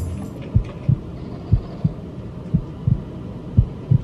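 Heartbeat sound effect: pairs of short, low thumps, lub-dub, repeating about once a second over a faint low hum.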